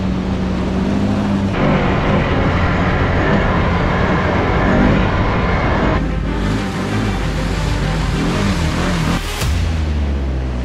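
Background music mixed with the Can-Am Outlander 650 ATV's engine running and revving as it drives through mud. The sound changes abruptly about a second and a half in and again about six seconds in.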